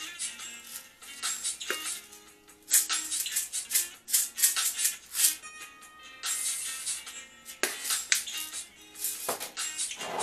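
Music playing, with repeated sharp rattling from a plastic jar of black pepper being shaken.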